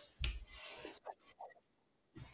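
A faint, brief rubbing noise near the start.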